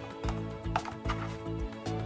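Background music with a steady beat, about two beats a second, under held tones.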